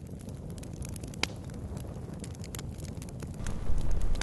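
Campfire crackling with scattered sharp pops, over a steady low rumble of wind on the microphone that grows louder near the end.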